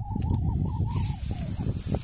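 Low rumbling wind and handling noise on a phone microphone, with a faint wavering tone held until shortly before the end.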